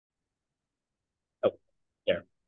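Silence, then about one and a half seconds in a single short vocal sound from a person, one clipped syllable.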